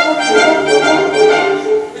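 Orchestral musical-theatre accompaniment with brass to the fore, coming in suddenly and playing a short phrase of held notes between sung lines.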